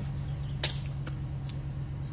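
A plastic peanut butter jar dropped from a second-storey window hits a concrete sidewalk head-first with one sharp crack about half a second in, the impact popping its lid off. Two much fainter knocks follow.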